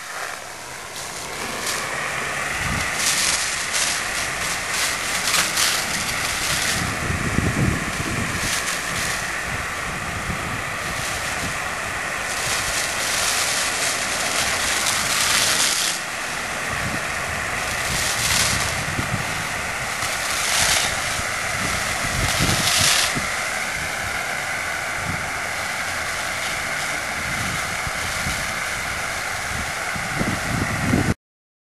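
A 21-gallon compressed air foam system (CAFS) discharging foam through a hose nozzle: a steady rushing hiss with a high tone running through it, and wind buffeting the microphone at times.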